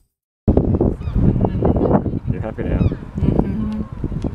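Wind buffeting the microphone, with birds giving repeated falling, honking calls over it; the sound starts suddenly about half a second in.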